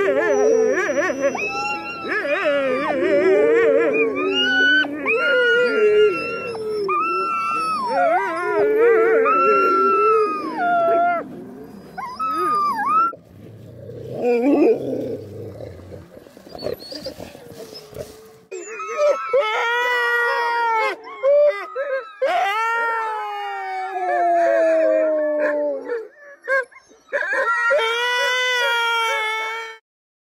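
Greenland sled dogs howling together in a loud, overlapping din, the pack's excitement at getting-ready time before a run. After a short lull midway, a few single dogs howl more clearly in long calls, one sliding steadily down in pitch.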